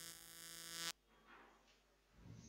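Steady electrical mains hum with a buzzy stack of overtones, which cuts off abruptly about a second in, leaving near silence.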